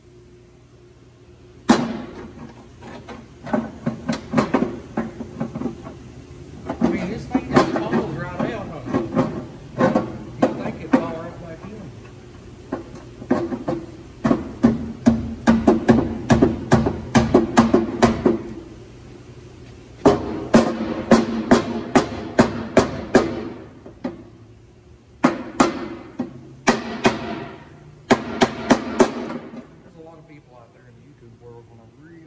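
Runs of sharp clicks and knocks from hand tools working on the engine's underside, some coming quickly at about four a second, over a steady low hum.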